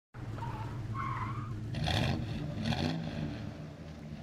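Low engine rumble with a short squeal about a second in and two brief hissing bursts around two and three seconds in.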